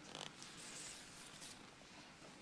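Faint rustling and scraping of large printed placard boards being handled and swapped, a few short brushes of noise.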